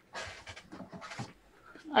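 Short, irregular breathy huffs and rustling close to the microphone, from a man bending down to pick up a heavy battery.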